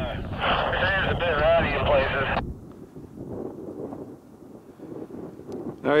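A voice over a handheld two-way radio, thin and tinny, cutting off abruptly as the transmission ends about two and a half seconds in. After that, wind buffets the microphone until a nearby voice answers at the end.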